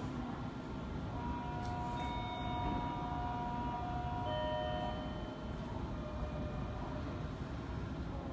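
An electronic chime of several held notes, starting about a second in, with a second group of notes near the middle, fading by about six seconds. Under it runs a steady low rumble.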